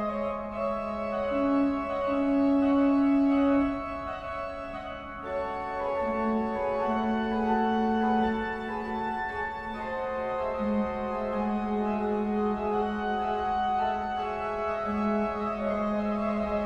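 Slow organ music: long held notes shifting over a steady low note.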